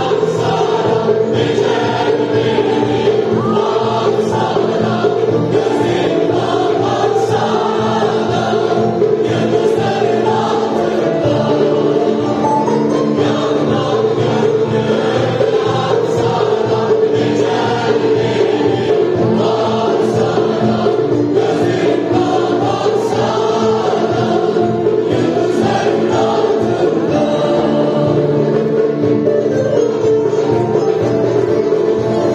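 Mixed choir singing a Turkish art music song, accompanied by ouds and bağlamas.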